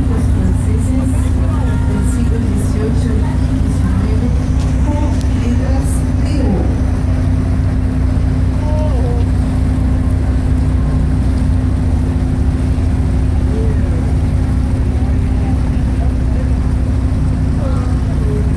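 Tour boat's engine running at a steady cruise, a constant low hum, with scattered passenger voices in the first several seconds.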